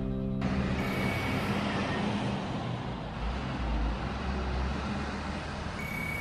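Theme music ends about half a second in. A steady low rumble of road-vehicle noise follows.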